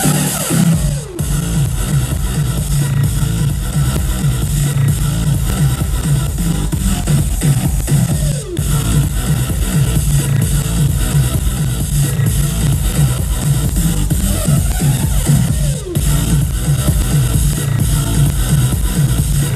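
Loud electronic dance music played over an arena PA, with heavy bass and a falling sweep effect three times, about every seven seconds. The camera microphone is overloaded, so the music is distorted.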